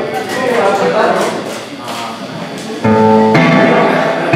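Electric guitars playing softly among voices, then nearly three seconds in a loud electric guitar chord rings out as the blues band starts a song.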